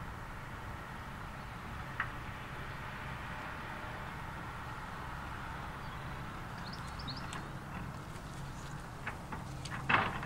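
Distant LMS Black Five steam locomotive 44932 working a train, heard as a steady far-off rumble and hiss. A sharp click comes about two seconds in, and a cluster of short clicks near the end, the loudest just before it ends.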